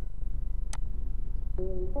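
A lull in background music, with a steady low hum and a single sharp click about three-quarters of a second in. Plucked music notes start again near the end.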